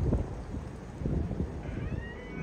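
Low rumble of a Fokker 100's Rolls-Royce Tay turbofans climbing away after takeoff, mixed with wind buffeting the microphone in uneven gusts. Near the end a faint, high, rising call begins.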